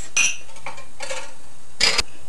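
Kitchenware being handled: a light clink just after the start, faint rubbing in the middle, and a sharper knock near the end.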